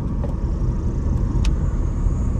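Steady road and engine rumble heard from inside the cabin of a Nissan Magnite driving at about 49 km/h. A short click comes about one and a half seconds in.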